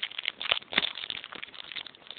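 Plastic card sleeve crinkling as a trading card is slid into it: a quick run of small clicks and rustles.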